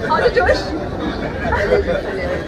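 Overlapping speech and chatter from several people, mixed with laughter.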